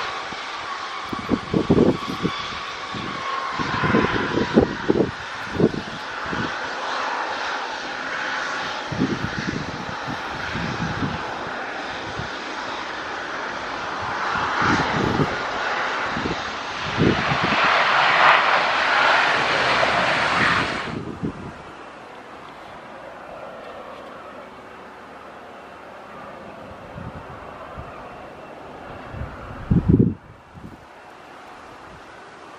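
Twin-turboprop ATR airliner landing: a steady drone from its propellers and engines, with a tone that dips slightly in pitch early on. It grows loudest around touchdown and the rollout, and strong wind buffets the microphone in gusts. About two-thirds of the way through the sound cuts off abruptly, leaving a much quieter steady hiss, with one more gust thump near the end.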